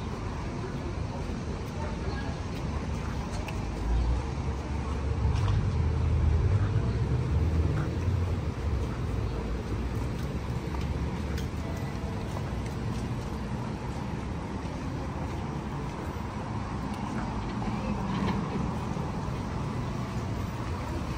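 City traffic noise from vehicles on the roads below, steady throughout, with a deeper low rumble that swells for a few seconds about four seconds in and again briefly near the end.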